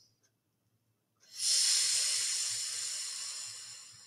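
A woman's long, deep breath out through the mouth, close to the microphone. It starts about a second in as a loud airy rush and fades away gradually over the next few seconds.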